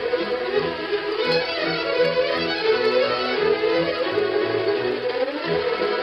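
Orchestral music carried by violins and bowed strings over a driving low pulse, playing without a break.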